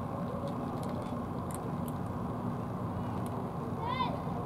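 Steady outdoor background noise with a faint low hum, and one short rising-and-falling call right at the end.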